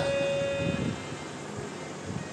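A harmonium holding one steady note that stops a little under a second in, leaving a faint steady hiss from the sound system.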